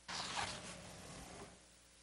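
Brief rustle of paper being handled close to a podium microphone. It starts suddenly and fades out within about a second and a half.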